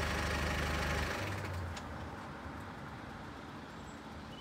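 A motor vehicle engine running with a steady low hum, dropping away sharply about a second in and fading out.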